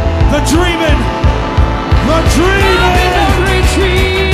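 Live band music with a heavy, steady bass, with pitched glides swooping up and down over it several times.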